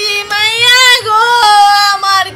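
A woman wailing in a high, sing-song lament, as in mourning a death. Two long drawn-out wails break about a second in.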